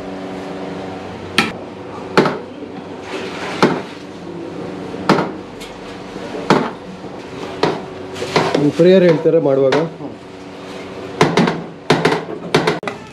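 Long steel ladle clanking against a large copper biryani pot (chembu) as the mutton biryani is stirred: sharp metal clanks about every second or so, with a quick run of three near the end, over a steady background hum.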